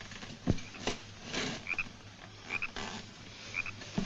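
Frogs croaking in short double calls about once a second. A thump comes about half a second in, and there are a few lighter knocks from movement on a wooden boat.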